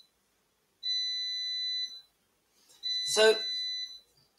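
A steady, high-pitched electronic tone, sounding twice for about a second each time.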